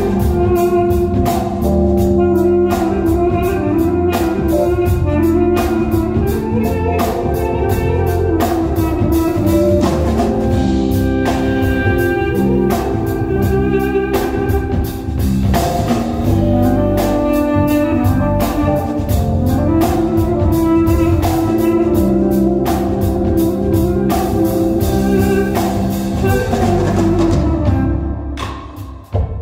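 Live ethno-jazz band playing: a duduk carries a sustained, held melody over a drum kit keeping a steady beat, with keyboard and electric guitar underneath.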